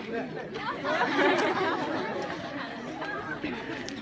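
Chatter of a group of young people, many voices talking over one another at once, loudest about a second in.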